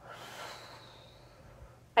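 A woman's audible breath out, a soft airy exhale lasting about a second and fading away.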